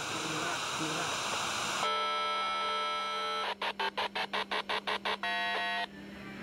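Hiss of television static, then electronic tones: a steady buzzing chord, a rapid run of about ten beeps, and a short, higher chord that cuts off near the end.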